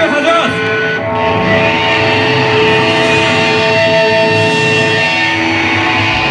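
Live heavy metal band playing loud through a club PA: distorted electric guitars hold long ringing notes, and the drums come in with hard beats at the very end.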